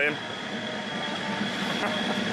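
A steady background rumble of running machinery, with a faint high whine throughout.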